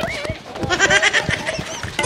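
A goat bleating, one wavering call from about half a second to a second and a half in.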